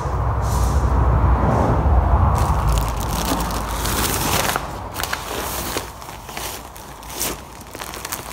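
Plastic wrapping on rolls of wire netting crinkling and crackling as they are handled, with a low rumble over the first three seconds.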